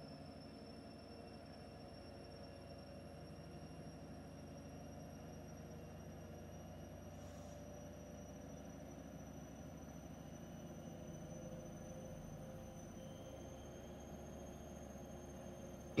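Faint steady room tone: a low hum with a few thin, steady high-pitched whines, unchanging throughout. Nothing stands out above it.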